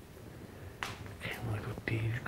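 A quiet pause in a man's speech, broken by one sharp click about a second in, then his voice faintly resuming.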